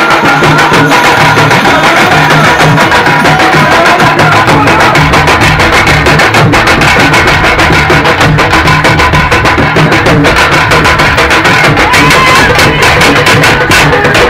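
Loud music with a fast, dense drum beat.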